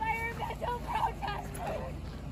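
People's voices calling out in the distance, in short pitched bursts with no clear words, over a low steady rumble.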